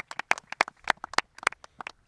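A small group of people applauding by hand: separate sharp claps, a few a second, loosely timed.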